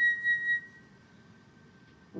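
Concert flute holding a high note with a slight waver, fading out under a second in, followed by a near-silent pause.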